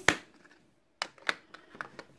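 Sharp clicks and taps from a plastic makeup palette case being handled on a countertop: one loud click at the start, then a few fainter ones from about a second in.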